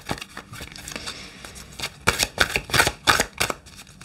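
A deck of numerology cards being shuffled by hand: soft rustling and sliding of cards, then a quicker run of crisp card flicks in the second half.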